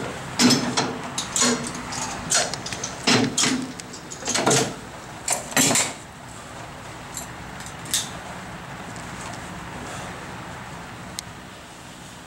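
Clanks, knocks and rattles from a gym weight machine as it is handled and adjusted and someone settles into its seat, clustered in the first six seconds. After that comes a steady whoosh of a floor fan with a couple of faint ticks.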